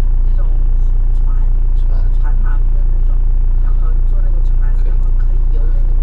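Motorhome engine idling while parked: a loud, perfectly steady low drone.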